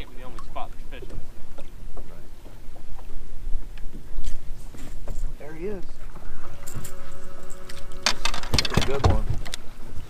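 Open-air ambience on a bass boat's deck with a steady low rumble and faint voices. Around two-thirds of the way in, a steady hum of several tones lasts about a second and a half, followed by a loud rushing burst of noise on the microphone.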